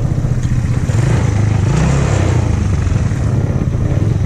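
Hammerhead GTS 150 go-kart's 150 cc single-cylinder engine running steadily, with a brief rise in revs about two seconds in.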